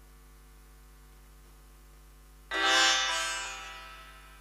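Low steady hum from the stage sound system. About two and a half seconds in, a single loud ringing chord from an instrument on stage sounds and fades over about a second and a half, the start of the students' song.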